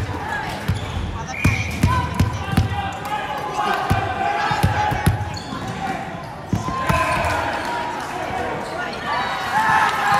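Volleyballs bouncing on the wooden floor of a large sports hall, a run of short thuds mostly in the first half, under the chatter and calls of many players, louder near the end.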